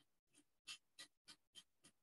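Near silence with faint, scratchy taps, about three a second.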